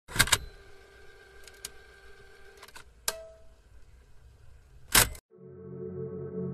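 Channel logo sting: sharp clicks over a steady electronic hum, with a louder click about five seconds in. The sound then cuts out, and a soft, low ambient music pad begins.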